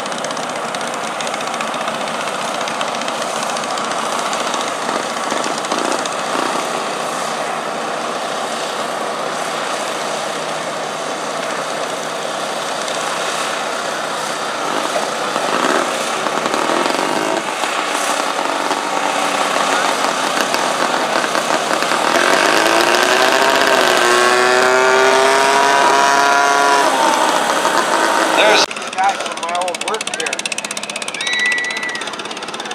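Garden tractor engine running under load while pulling a stoneboat sled. About 22 seconds in it revs up and holds a steady high pitch, then cuts off abruptly near the end.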